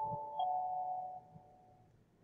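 A two-note electronic chime: one tone sounds, a second joins less than half a second later, and both hold and fade out within about two seconds.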